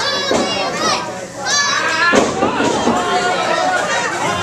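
Children in the audience shouting in high-pitched voices over crowd voices, with two loud shouts: one near the start and another about a second and a half in.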